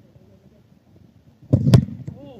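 A single sharp knock close to the microphone about one and a half seconds in, wrapped in a brief low rumble.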